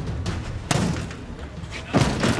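Handheld steel police battering ram (an 'enforcer') striking a reinforced door: two heavy blows about a second and a quarter apart. The door is opening by the second blow.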